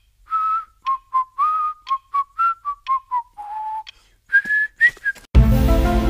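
A cartoon character whistling a short tune: a run of quick notes that wander gently downward to one longer low note, then three higher notes. About five seconds in, music starts abruptly.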